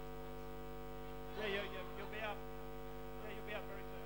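Steady electrical mains hum, a low buzz with many even overtones, with a few brief faint voices in the room about one and a half, two and three and a half seconds in.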